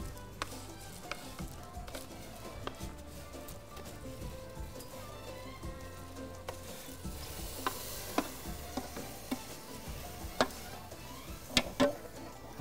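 Fried vermicelli for balaleet being scraped with a wooden spatula from a metal bowl into a pot of hot sugared water, with a light sizzle and scattered taps of the spatula on the bowl. A few sharper knocks come near the end.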